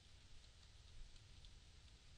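Faint keystrokes on a computer keyboard, a few scattered soft clicks over near-silent room tone.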